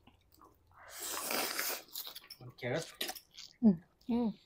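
A person slurping a long mouthful of noodles, a loud hissing draw lasting about a second, followed by chewing noises and a few short voiced sounds, the loudest just before the end.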